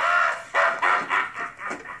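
Loud male laughter in several quick bursts.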